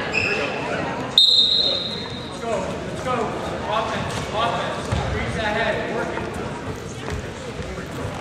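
Voices of spectators and coaches calling out in a large gym during a wrestling bout, with a sudden high steady whistle about a second in that lasts about a second, and a few dull thuds later on.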